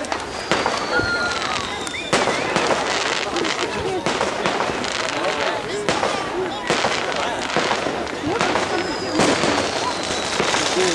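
Fireworks going off: repeated bangs and crackling throughout, with a long whistle that slowly falls in pitch about half a second in and again near the end.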